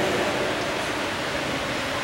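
A steady, even hiss with no voice in it: the background noise of the room and recording, heard in a pause between spoken words.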